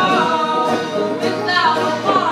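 Live folk-punk song: two women's voices singing together over banjo accompaniment.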